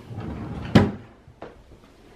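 A wooden dresser drawer sliding shut and closing with a sharp bump, followed by a lighter knock.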